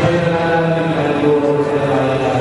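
Slow, chant-like singing with long held notes.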